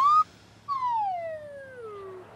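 Cartoon whistle sound effect: the end of a whistle sliding up in pitch cuts off, and about half a second later a longer whistle slides steadily down.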